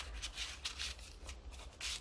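Paper rustling and sliding as the pages and a tucked-in card of a handmade junk journal are handled, in a few soft swishes with a louder one near the end.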